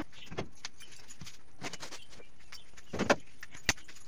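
Scattered clinks and knocks of metal kitchenware being handled, with the two sharpest knocks about three seconds in and another shortly after, over a steady hiss.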